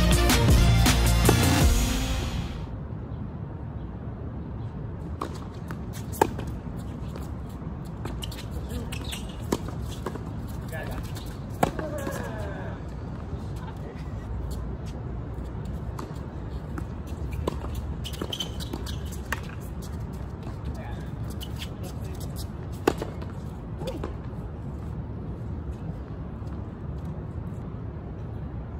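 Music fading out about two seconds in, then tennis balls struck by rackets: a few sharp pops spaced several seconds apart over a low steady background, with faint players' voices in between.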